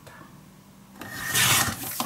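Paper rubbing across the worktable: a rough, scraping rustle that starts about a second in and lasts about a second.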